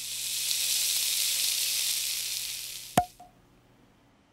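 Cartoon sizzle sound effect, a high hiss standing for scorching heat, that swells and then fades. About three seconds in comes one sharp click with a brief ringing tone.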